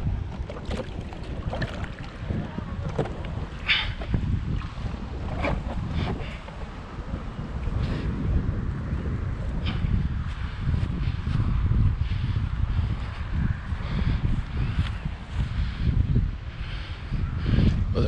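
Wind buffeting the camera microphone as a low, steady rumble, with scattered brief clicks and knocks from handling and footsteps.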